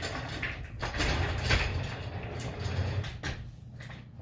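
A small swivel desk chair being handled and moved: a run of knocks and clatter over a low rumble. It is loudest about a second and a half in and fades toward the end.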